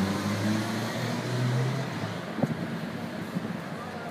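A vehicle engine idling: a low steady hum that rises slightly in pitch about a second in and fades out about two seconds in, leaving street traffic noise. A single short knock about two and a half seconds in.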